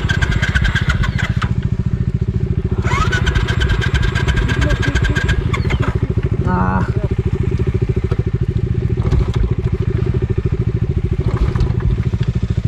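Royal Enfield Classic 500's electric starter cranking twice, each time for about two seconds with a whine that rises as it spins up, and the engine not catching. Another motorcycle idles steadily underneath.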